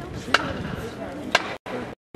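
Two sharp knocks about a second apart over a steady outdoor murmur of a crowd.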